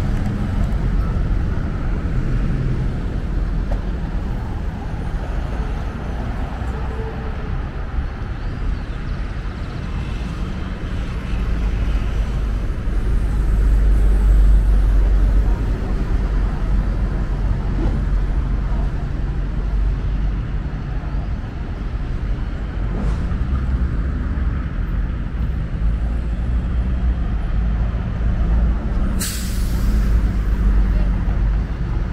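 City street traffic: buses and cars running past, with a louder low rumble around the middle as a bus goes by. Near the end comes one short, sharp hiss of a bus's air brake.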